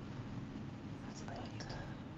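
Faint whispering from a person thinking over a trivia answer, over a steady low hum from the call's audio line.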